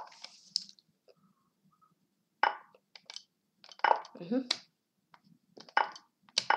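Lichess's wooden piece-move and capture sound effects, about four short clicks a second or so apart as bullet-chess moves are played in quick succession.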